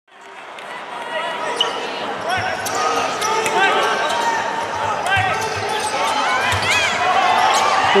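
A basketball being dribbled on a hardwood arena court, with sneakers squeaking and players calling out over a steady crowd murmur, fading in over the first second. Right at the end a long, drawn-out shout begins.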